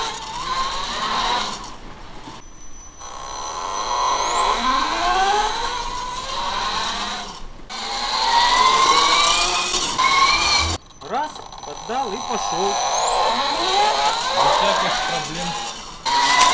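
Homemade 15 kW electric bike's brushless motor and speed controller whining, the pitch rising several times as the bike accelerates, over tyre and road noise.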